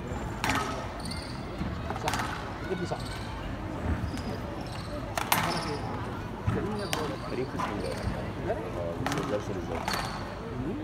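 Squash ball struck by rackets and hitting the walls of a glass court during a rally: about five sharp cracks a second or two apart, with short high squeaks of shoes on the court floor and a steady murmur of crowd voices.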